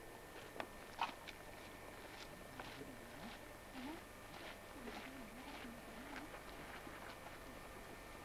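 Quiet outdoor background with a few faint clicks and taps, the sharpest in the first second or so, and faint distant voices in the middle.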